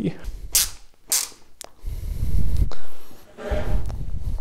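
Handling sounds as the main mirror cell is forced back into a Sky-Watcher 200PDS telescope tube: two short scrapes and a click, then two heavy low thuds a little over a second apart.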